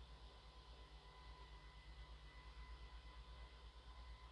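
Faint low, fast-pulsing hum of a Jeep Wrangler Sky One-Touch power top's electric drive running as the fabric roof panel retracts, near the end of its roughly 20-second opening cycle. Two faint steady high tones sit over it.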